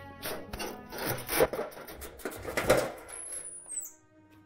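A wooden door being unlocked and pushed open: several loud rasping, scraping strokes, with a thin high falling squeak near the end.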